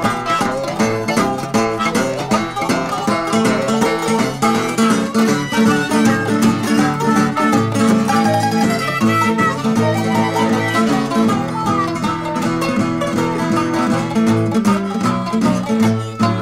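Instrumental break in an acoustic country-blues string-band number: plucked acoustic guitar and mandolin playing a steady rhythm, with no singing.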